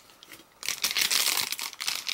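Clear plastic cellophane bag crinkling as it is handled, starting about half a second in.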